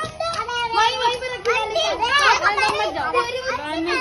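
Children's high-pitched voices, several chattering and calling out over one another as they play.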